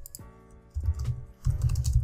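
Typing on a computer keyboard, a few keystrokes at a time, over background music holding steady chords.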